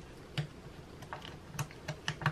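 Fingers working at a freshly glued bridge on an acoustic guitar's top, making about five light, irregular clicks and taps.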